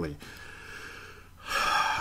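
A man takes a quick, audible breath in, about half a second long, near the end, between spoken sentences.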